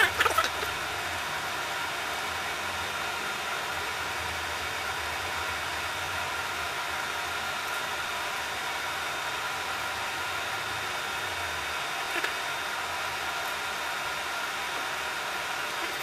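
A steady mechanical hum with hiss, like a fan or motor running, with a low drone underneath that drops away about twelve seconds in.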